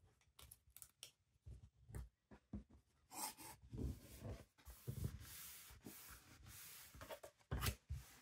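Paper and card being handled: a paper-covered album board has its flaps folded and pressed down onto double-sided tape. Light taps and rustles at first, then a few seconds of steady rubbing, and a louder thump near the end as the board is laid flat on the cutting mat.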